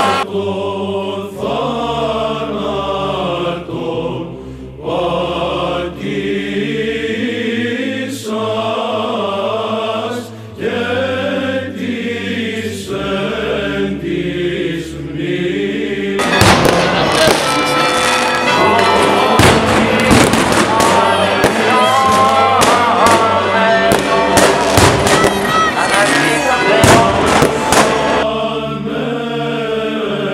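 Orthodox clergy chanting a liturgical hymn into a microphone for the first half. About sixteen seconds in, a loud, dense run of fireworks bangs and crackles takes over for about twelve seconds. The chanting is heard again near the end.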